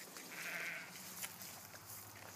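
Australian Shepherd puppy giving one short, high whine of about half a second near the start, followed by a sharp click a little past halfway.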